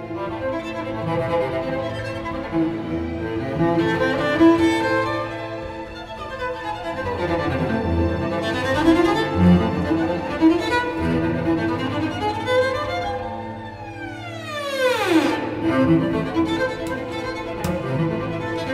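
Solo cello with orchestra: bowed strings play dense sustained figures with sliding pitch glides, falling and rising around the middle. A long, steep downward slide comes about three quarters of the way through.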